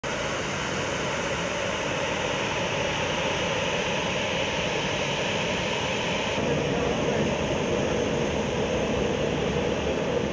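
Jet airliner's engines running steadily as it taxis in, a constant noise with a hiss over a lower hum. The tone shifts slightly about six seconds in.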